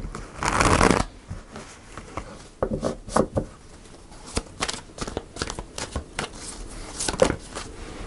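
A tarot deck being shuffled by hand: a loud rush of cards about half a second in, then soft, scattered flicks and taps of the cards. Near the end a card slips out of the deck onto the cloth-covered table.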